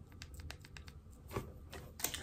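Faint, sparse crinkles and clicks of a small clear plastic candy wrapper being handled and opened by fingers, one a little louder just before a second and a half in.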